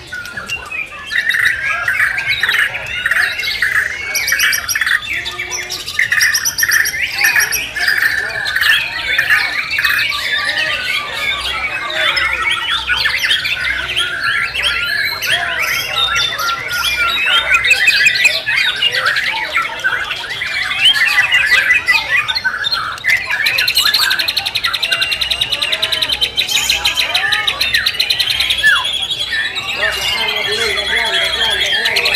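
White-rumped shama (murai batu) singing a loud, continuous, varied song of whistles and rapid trills, with other caged shamas singing over one another. From about three-quarters of the way in, a fast, very high rattling trill joins the song.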